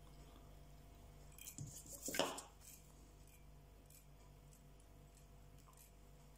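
A few small clicks and handling sounds of fly-tying tools and thread, a little under two seconds in, the loudest just after two seconds, over a faint steady hum.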